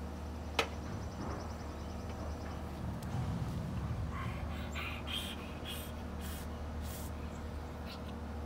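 A child burping from fizzy soda: a rough, croaky belch about three seconds in, followed by several short hissy breaths. A sharp click comes just before, about half a second in.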